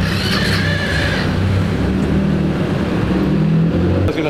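Motor vehicle engine running close by: a steady, even low hum, while a car drives past.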